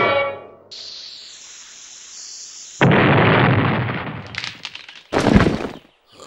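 Cartoon sound effects: a falling whistle-like tone and a high hiss, then a heavy crash about three seconds in, some crackling, and a second loud crash near the end, as a block smashes into rubble.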